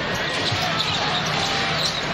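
Steady crowd noise in a basketball arena, with a basketball bouncing on the hardwood court and faint voices mixed in.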